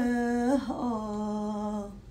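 A woman singing unaccompanied, holding a long wordless note, then stepping down to a lower note about half a second in that is held and fades out near the end.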